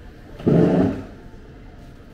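A wooden chair scraping once, briefly and loudly, on the floor as it is shifted in to a table, about half a second in.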